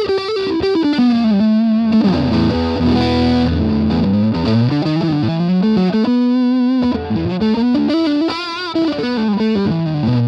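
Electric guitar, an Edwards Les Paul clone with Seymour Duncan Pearly Gates pickups, playing a single-note lead line through a Way Huge Green Rhino MkIV overdrive pedal switched on. A run of quick notes gives way to held notes, some shaken with vibrato near the end.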